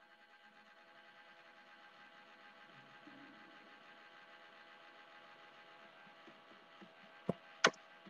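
A faint steady hum made of several held tones, then two sharp clicks about a third of a second apart near the end.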